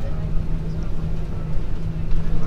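Cabin noise of an Airbus A340-300 taxiing, with its CFM56 engines at idle: a steady rumble with a constant low hum, heard from inside the cabin.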